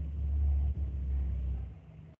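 Low rumbling noise picked up by a participant's open microphone on a video call, cut in and out abruptly by the call's audio gating, and fading near the end.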